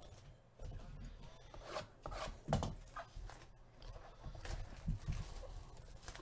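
Clear plastic shrink wrap being torn and pulled off a cardboard trading-card hobby box: irregular crinkling and crackling of the cellophane, with a few louder rustles.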